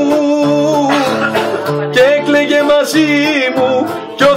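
Acoustic guitar strummed as accompaniment to a man singing, his long held notes wavering in pitch.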